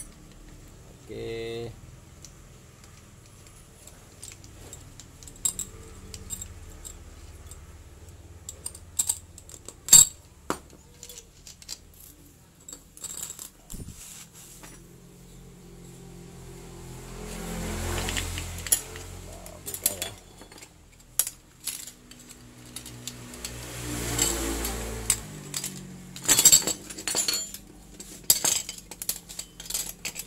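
Metal clutch parts of a Kawasaki KLX 150 clinking and clicking as they are handled: clutch springs, the spring bolts, the pressure plate and the friction and steel plates being set down on a tile floor. The clicks come in scattered bunches. Two longer swells of noise rise and fall, one just past the middle and another about six seconds later.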